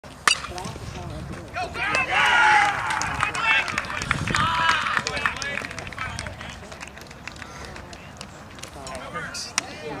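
A baseball bat hits a pitched ball with one sharp crack just after the start. Spectators then cheer and shout for about three seconds as the batter reaches base on the hit.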